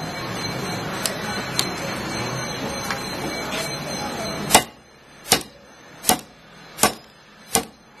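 Hammer blows on a modified-nylon tactical belt clip held in a steel bench vise: sharp, evenly spaced knocks, about one every three-quarters of a second, starting about halfway through. They are the strikes of a repeated impact test of the clip. A steady rushing noise fills the first half and stops as the blows begin.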